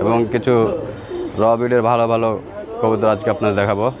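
Domestic pigeons cooing from a wire cage, beneath a man talking.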